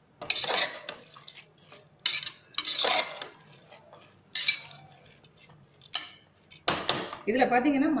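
A metal spoon scraping and stirring chopped vegetables and dal in a metal pressure cooker pot, in about six separate strokes roughly a second apart.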